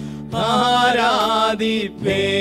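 Man singing a Tamil worship song into a microphone, the melody wavering in pitch over sustained instrumental chords. The voice drops out briefly near the start and again just before the end.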